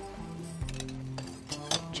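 Soft background music with long held notes, with a few faint clinks of utensils against pans near the end.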